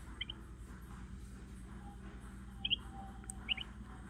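Small bird chirping faintly in short high double chirps, three times, over a steady low hum, heard through a phone's speaker from a bird-feeder camera's live feed.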